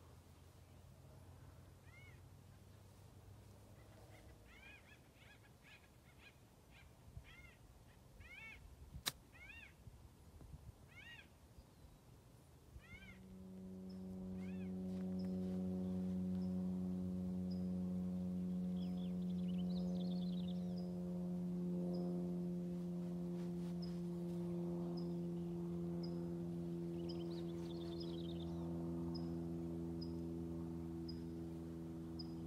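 Quiet outdoor ambience with repeated chirping bird calls and one sharp click about nine seconds in. From about thirteen seconds a steady, low-pitched motor drone takes over and runs on, louder than everything before it, with faint high chirps and ticks over it.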